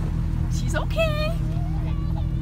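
Motorboat engine running steadily while the boat is under way, with wind and water noise, heard from on board. A person's high-pitched shout rises over it about a second in.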